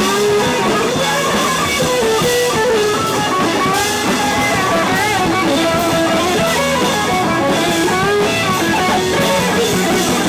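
Live rock band playing loud and steady, with strummed electric guitar over a drum kit.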